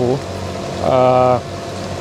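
A man's voice holding a single drawn-out hesitation sound for about half a second, one flat pitch, in a pause between phrases of talk.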